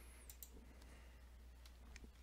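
Near silence: room tone with a low steady hum and a few faint clicks.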